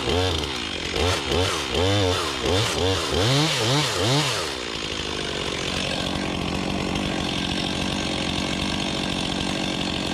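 Chainsaw cutting into a tree trunk during felling, its engine speed surging up and down about twice a second. About halfway through it settles to running at a steady pitch.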